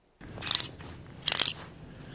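Plastic clothes hangers scraping along a metal rail as a gloved hand pushes through knit sweaters: two short scrapes, about half a second and a second and a half in.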